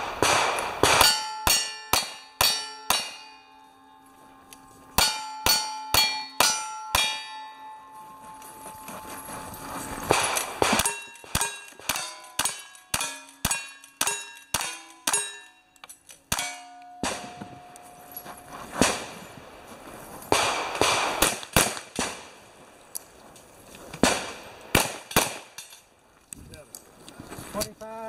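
Cowboy action shooting: strings of gunshots at steel targets, many followed by the ringing clang of struck steel plates. Two quick strings of about five shots come first, then a fast run of about ten rifle shots, then a slower, more scattered run of shots toward the end.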